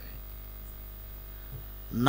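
Steady electrical mains hum: a low, even buzz with a ladder of faint steady overtones, picked up through the microphone's sound system.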